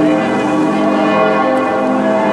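Cologne Cathedral's bells ringing, several bells at once, their tones overlapping and hanging on.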